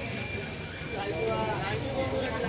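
Voices of people talking a little way off over low street noise, after the close speaker has stopped.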